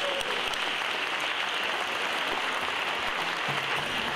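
A large audience applauding steadily.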